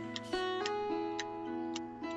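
Gentle background score of held notes that shift in pitch, with a light ticking about twice a second.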